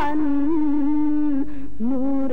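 A single voice of a devotional nasheed holding one long sung note with a slight waver, then starting a new, lower note near the end.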